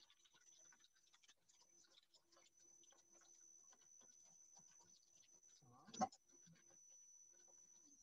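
Near silence: faint room tone with a thin steady high whine and scattered soft clicks, broken by one short knock about six seconds in.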